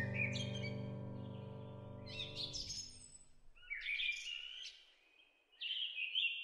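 Songbirds chirping over a soft, held music chord that fades out about two and a half seconds in; the birdsong then carries on alone, with a short pause near the end.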